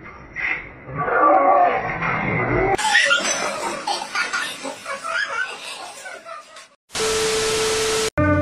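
Phone-recorded commotion of young men's voices and laughter. About a second before the end it gives way to a burst of TV static: an even hiss with a steady tone that cuts off sharply.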